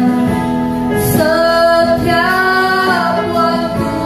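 Two women singing a worship song in Indonesian, with electronic keyboard accompaniment; the voices hold long notes and move to new pitches about a second in and again near the middle.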